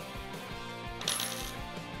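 Faint metallic clinking of a steel hex key against a Milwaukee Switchblade self-feed bit as its set screw is snugged up, about a second in, over soft background music.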